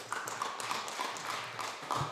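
Applause from members in a parliamentary chamber: many hands clapping irregularly at the close of a speech, dying away near the end.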